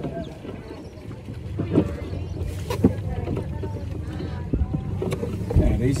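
Sounds aboard a coxed quad scull manoeuvring at the start: a few sharp knocks from the boat and sculls over water and a low steady hum, with faint voices in the background.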